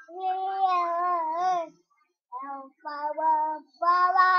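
A toddler's wordless, sing-song vocalizing: one long drawn-out call with a wavering pitch, then three shorter calls after a brief pause.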